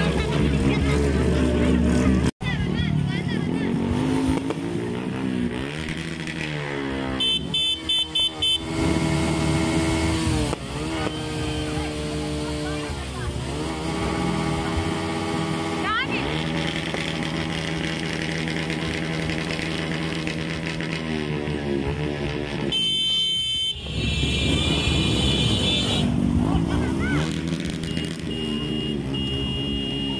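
Motorcycle engines revving up and down over and over, with people's voices.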